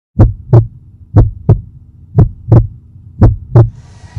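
Heartbeat sound effect: four double thumps, lub-dub, about one a second, over a faint steady hum.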